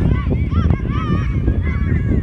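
Birds calling: a quick run of short calls that bend up and down in pitch, over a heavy low rumble.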